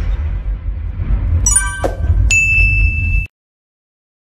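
Logo intro sound effects: a deep rumble with a metallic ding about a second and a half in, then a high ringing tone from just past two seconds. All of it cuts off suddenly a little after three seconds.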